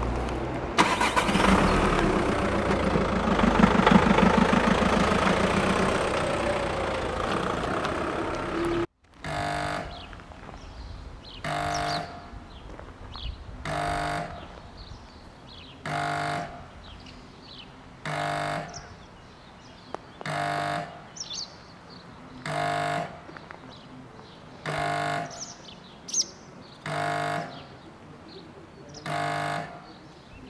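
A train passes loudly during the first nine seconds or so. After a sudden cut, the level crossing's classic electric warning horn hoots about once every two seconds, each hoot about a second long, with faint birdsong between.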